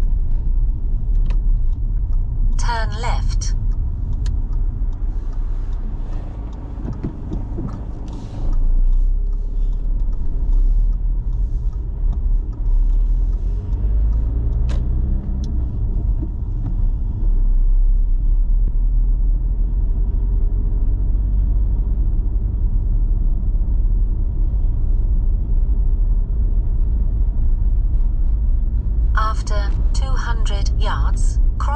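Steady low road and engine rumble inside a moving car's cabin. It eases slightly, then gets louder again about eight seconds in.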